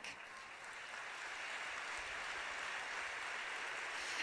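Audience applause from a large hall, heard faintly through the stage microphone, swelling a little in the first couple of seconds and then holding steady.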